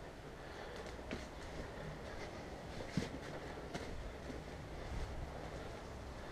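Gloved hands crumbling and stirring potting soil with perlite in it: a soft rustling with a few faint crackles, over a steady low hum.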